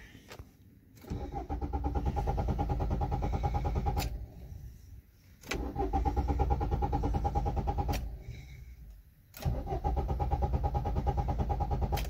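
Maruti Suzuki Ertiga diesel engine cranked by its starter motor three times, each try lasting about two to three seconds with a fast, even chugging, without catching. It is a diesel that has run out of fuel being cranked on an empty tank. Short clicks of the ignition key come between the tries.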